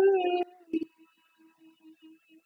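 A woman's closed-mouth vocal sound: a held, wavering "mmm" squeal that stops about half a second in. It is followed by faint, broken humming at one pitch.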